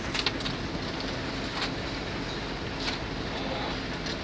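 Steady low rumble of a vehicle engine running, with a few scattered sharp taps of metal tools on a steel slump cone as fresh concrete is filled and rodded into it.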